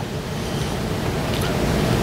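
A steady rushing noise with no pitch, heaviest in the low end, building slightly louder, then stopping as the voice returns.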